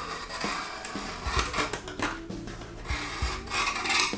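LED backlight strips being peeled off a TV's metal backplate, the double-sided tape tearing away in an uneven run of crackles, with rubbing and scraping of the strips against the metal.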